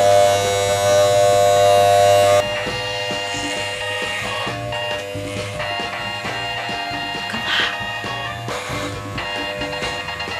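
Corded electric hair clippers buzzing steadily as they cut hair down to the scalp. About two and a half seconds in, the sound drops abruptly and music plays over a fainter clipper buzz.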